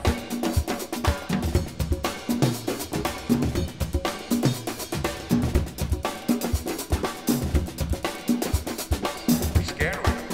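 Instrumental stretch of a band's track: a drum kit plays a steady beat of snare and bass drum hits over a bass line.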